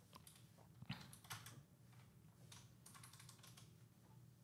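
Faint typing on a computer keyboard: a few scattered keystrokes in the first half, then a short run of keys near the end.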